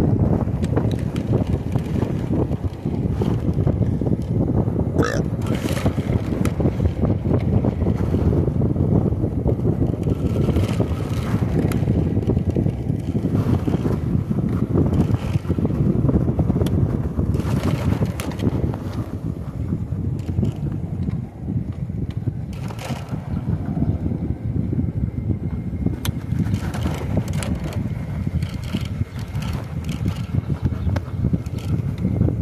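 Wind buffeting the microphone of a phone mounted on a moving electric bike, a steady, choppy low rumble.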